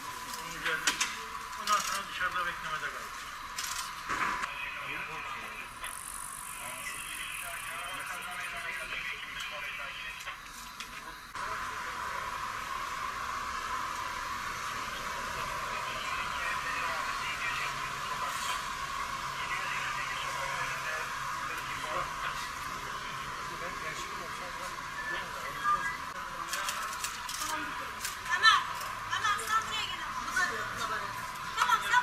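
Indistinct voices of people gathered close by, with a few sharp knocks and clatter in the first few seconds. The sound is thin and tinny, with little low end.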